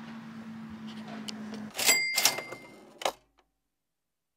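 Cash-register 'ka-ching' sound effect about two seconds in: sharp mechanical clacks with a bell ringing briefly, and a last click about a second later, after which the sound cuts to silence. Before it, only a faint steady hum of room tone.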